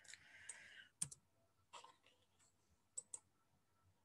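A few faint clicks from a computer mouse or keys, scattered: one pair about a second in, another near two seconds, and another near three seconds.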